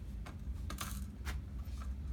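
Plastic toy rattle on a baby's activity centre: beads clicking inside a clear cloud-shaped rattle, three short rattles about half a second apart as it is batted.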